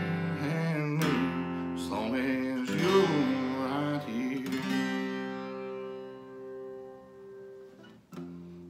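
Strummed acoustic guitar with a man singing drawn-out notes over it for about the first four seconds. A last strummed chord is then left to ring and fades away.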